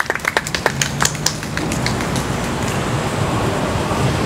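Scattered hand clapping from a small audience that dies away about a second and a half in. It gives way to a steady low rumble of a passing road vehicle.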